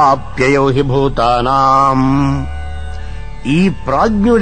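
A man's voice chanting a Sanskrit Upanishad verse in a melodic recitation, holding long steady notes. The chant breaks off briefly near the end before the next phrase begins.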